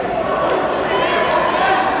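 Crowd din in a large, echoing sports hall: many voices chattering and calling out at once, with no single voice standing out.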